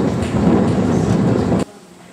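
Wind buffeting the camera's microphone, a loud low rumble that cuts off abruptly about a second and a half in, leaving a much quieter background.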